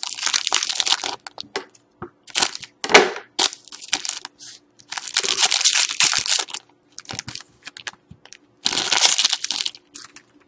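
Foil wrapper of a Panini Limited hockey card pack being torn open and crumpled by hand, in irregular spells of crackling, the longest about five and nine seconds in.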